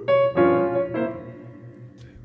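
Piano chords: one struck right at the start, another a moment later and a third about a second in, each left to ring and fade away.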